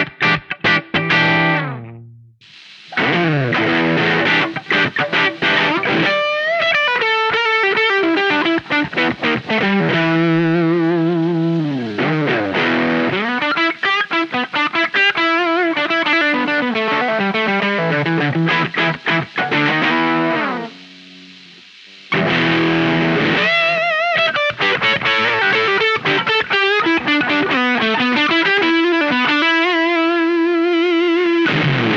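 Electric guitar played through a Ross Fuzz pedal set to its Vintage mode: distorted chords and single-note lines with sustained, bent and wavering notes. The playing stops briefly about two seconds in, and drops away again for a second or so past the twentieth second.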